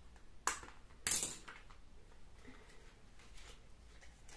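Packaging being opened and handled by hand: a sharp snap about half a second in, then a louder, short crackling rustle at about a second, followed by faint rustling.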